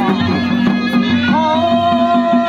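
Live Ladakhi folk dance music: a reed pipe plays a melody over drums, settling into a long held note a little past halfway.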